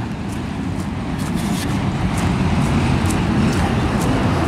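Road traffic on a wet road: a pickup truck approaching and growing louder, over a steady low rumble.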